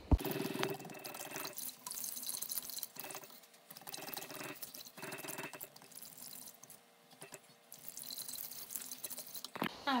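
A silicone whisk stirring a thin liquid sauce in a pressure cooker's nonstick inner pot, in bursts of swishing, sloshing strokes with short pauses between them, to dissolve jam into the liquid. There is a sharp click right at the start.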